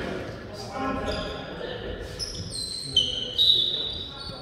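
Sneakers squeaking on a sports-hall floor: a quick run of short, high squeaks, the loudest near the end, ringing in a large echoing hall.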